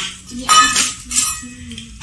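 Steel dishes and utensils clinking: a sharp metal clink about half a second in that rings briefly, and a second clink a little later.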